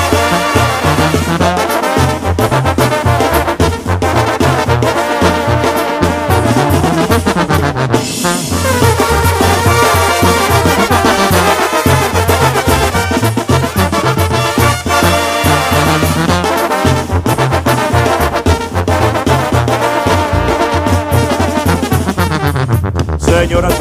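Mexican banda music in an instrumental passage: trumpets and trombones carry the melody over a stepping bass line, with no singing.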